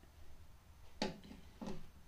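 Two light clicks, about two-thirds of a second apart, from a metal honing guide and chisel being handled on a wooden jig and bench, over a faint low hum.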